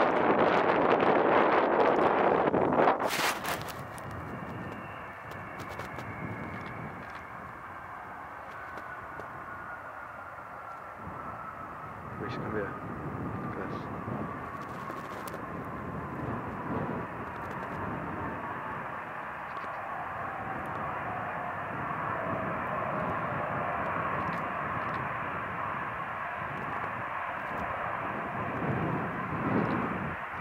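Wind buffets the microphone for the first three seconds, then cuts off suddenly. After that a twin-engine Airbus A320-family jet taxis at low power, its engine whine slowly falling in pitch.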